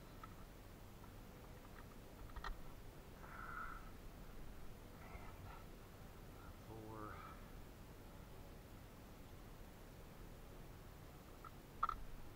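Quiet handling of spark plug wires and their boots on the engine, with a few faint clicks, one about two and a half seconds in and one near the end. A short call that rises in pitch comes about seven seconds in.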